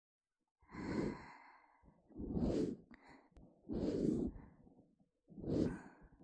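Ear pick rubbing and scraping along the rim of the outer ear on a binaural recording, in four slow, even strokes about a second and a half apart.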